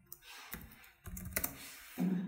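A few irregular keystrokes on a computer keyboard, used to edit code and save the file.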